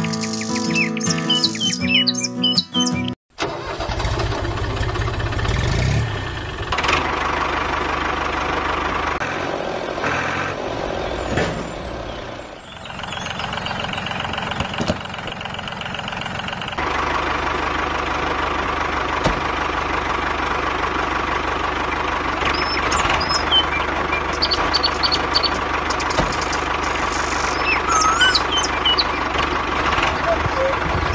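About three seconds of music with birds chirping, which cuts out, followed by a steady mechanical motor-like running sound that changes in character a few times, with birds chirping over it in the last several seconds.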